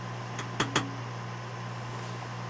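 A person sipping and swallowing beer from a glass: a few short clicks and a gulp about half a second in, over a steady low hum.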